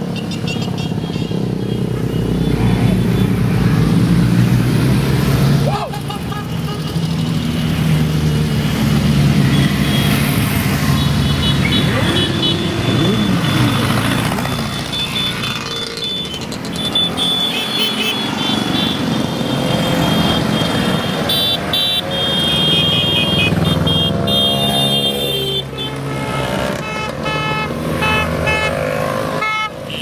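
A procession of motorcycles riding past one after another, engines rising and falling as each goes by, giving way to a stream of motor scooters. From about halfway through, horns toot again and again in short beeps.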